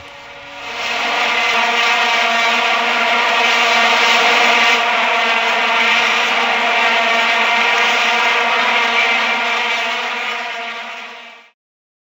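Vuvuzela blowing one steady, loud note, swelling in over about the first second, held for about ten seconds, then cutting off near the end.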